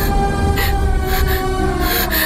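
Dramatic background score of a TV serial: a sustained, heavy low drone with held tones and sharp percussive hits about every half second, building tension.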